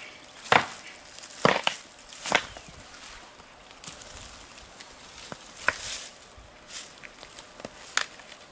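Dead, weathered tree trunk cracking and splintering as it is wrenched apart by hand. A sharp crack comes about half a second in, two more in quick succession around a second and a half, and another just after two seconds, then a few lighter snaps later on.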